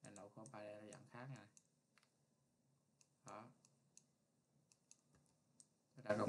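Faint, scattered clicks of a computer mouse, about eight over a few seconds, with a low voice murmuring in the first second and a half and again about three seconds in.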